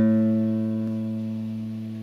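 Open fifth (A) string of a nylon-string classical guitar ringing out as a single low A note, slowly fading after being plucked. It is played as the reference pitch for tuning that string to standard tuning.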